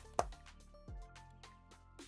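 Soft background music with a few short clicks and a knock, the loudest just after the start, from a phone case being pried off a smartphone by hand.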